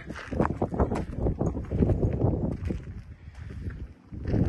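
Footsteps on gravel, an irregular series of steps.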